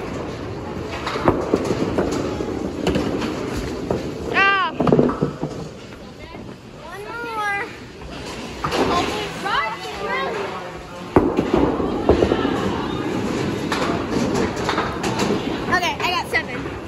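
Bowling-alley clatter: sharp knocks and crashes of balls and pins, the sharpest about eleven seconds in, with high-pitched calls and chatter of voices over it.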